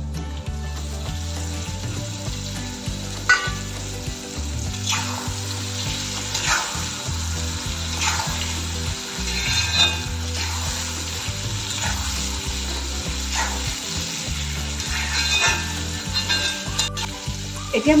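Marinated duck meat sizzling as it fries with onions and ginger in a cast iron kadai. A spatula scrapes and stirs through it every second or two.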